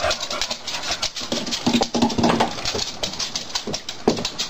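Dogs moving about on a hard kitchen floor: a quick, irregular run of clicks and breathing, with a brief low whine near the middle.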